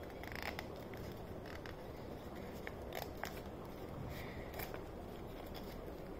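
Faint rustling and small clicks of folded paper being handled and pressed while it is glued.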